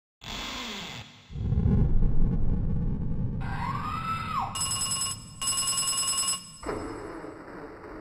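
Edited-in sound effects: a loud low rushing whoosh, a single screech that rises and falls, then two bursts of bell-like ringing.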